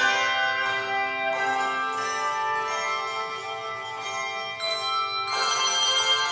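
Handbell choir playing a slow piece: ringing chords struck about every second, each left to sustain and overlap the next.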